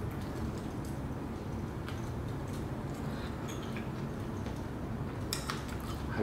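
A person quietly chewing food, with a few faint mouth and handling clicks and a slightly stronger pair of clicks near the end, over a steady low room hum.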